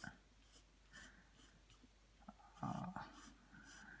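Faint scratching of a wooden pencil on paper in short, repeated cross-hatching strokes, about two a second.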